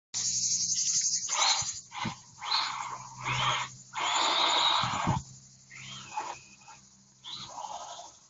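Two electric 1:12 and 1:18 scale RC cars driving fast on dirt: motor and tyre noise comes in repeated bursts of under a second to about a second as the throttle is worked, the longest burst about halfway through.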